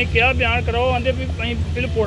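A man speaking, over a steady low rumble.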